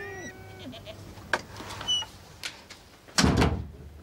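A sheep bleats once, the call ending just after the start. A little over three seconds in, a door shuts with a loud thud.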